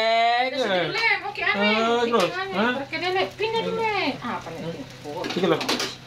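A man's voice holding a sung note, then breaking into lively sung and laughing vocalising. Food frying in oil sizzles in a wok underneath.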